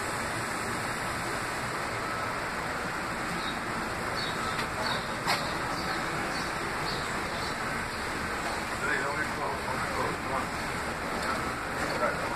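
Steady rushing background noise, with a few faint short chirps from about four seconds in.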